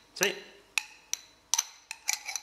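Stainless steel meat injector's plunger being worked in and out of its barrel, its oiled o-ring sliding easily, with four sharp metal clicks and clinks as the parts knock together.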